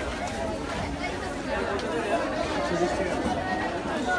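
Indistinct chatter of many overlapping voices: the hubbub of vendors and shoppers in a busy fish market.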